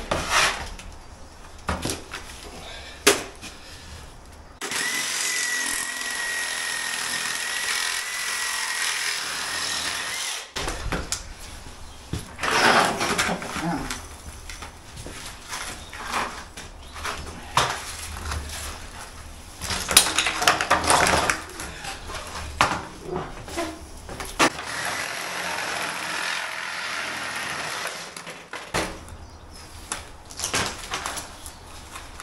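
Cordless reciprocating saw cutting through an old French door frame in two runs: a steady run starting about five seconds in and lasting about six seconds, and a shorter, fainter one near the end. Between the runs there are sharp knocks and clattering as the cut frame pieces are worked loose.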